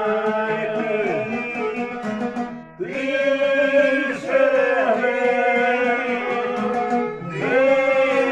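Male folk singing in long held, ornamented phrases over a plucked long-necked lute (šargija) and violins. The voice drops out briefly twice for breath, about a third of the way in and near the end.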